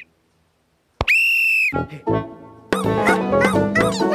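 Plastic sports whistle blown once after a second of silence: a single loud, shrill, steady blast lasting under a second. Bouncy cartoon music starts up near the end.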